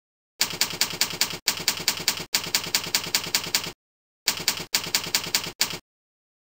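Keyboard typing: rapid key clicks, about five or six a second, entering an email address and password. They come in two runs with a short pause about four seconds in, and each run starts and stops abruptly.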